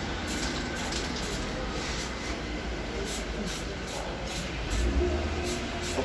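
Aerosol spray-paint can hissing as a bicycle frame is sprayed, with a steady low rumble underneath.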